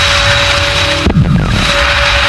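Cinematic logo-intro sound effects: a loud rushing whoosh over a steady held tone, with a sudden hit about a second in followed by a low sound sliding down in pitch.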